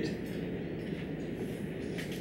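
Dry-erase marker writing on a whiteboard, faint scratching strokes over a steady background hum in the room.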